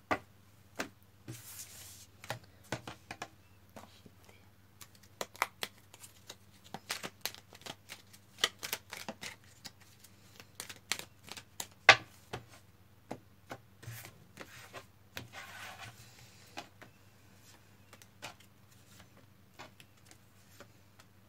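Tarot cards being shuffled and laid down on a wooden table: irregular sharp taps and clicks of cards, the loudest about twelve seconds in, with a brief sliding rustle around fifteen seconds.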